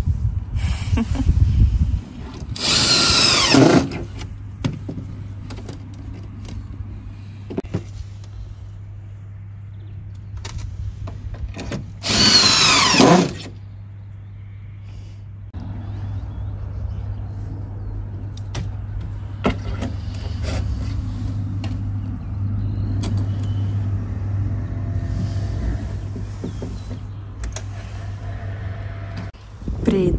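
Cordless drill driving screws through a jig into wooden deck boards: two short whining bursts of about a second each, about three seconds in and again about twelve seconds in. Between them are a few small knocks and a steady low hum.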